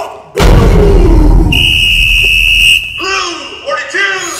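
Performance soundtrack mix: after a brief gap, a heavy bass boom with a falling tone rings on for about two seconds. A steady high-pitched tone is held over it for just over a second. A voice comes in near the end.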